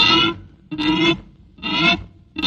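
Instrumental break in a Tamil film song: a plucked string instrument, guitar-like, strikes three chords about a second apart, each ringing briefly before dying away.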